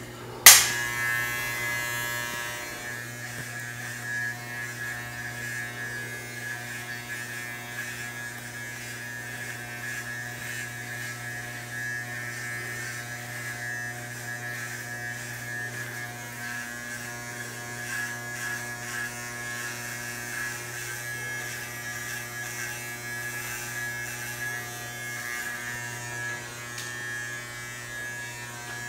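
Corded electric hair clippers switched on with a sharp click about half a second in, then running with a steady buzzing hum.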